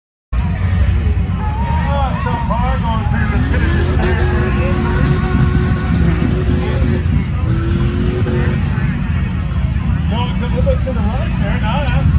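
Lifted Ford Super Duty mud truck's engine running hard as it drives through a mud pit, a loud, steady low rumble that cuts in abruptly just after the start. Crowd voices are heard over it, most clearly near the start and the end.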